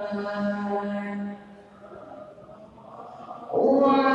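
Men's voices chanting a devotional Arabic chant on long held notes. The singing drops away about a second and a half in, stays soft for about two seconds, then comes back loudly just before the end.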